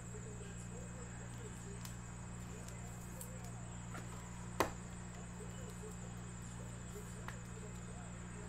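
Steady low electrical hum of studio equipment, with a few faint clicks of cards and cases being handled and one sharper click a little past halfway.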